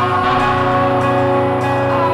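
Rock music recording: guitars holding sustained, ringing notes over a steady low note, with a brief pitch slide near the start and again near the end.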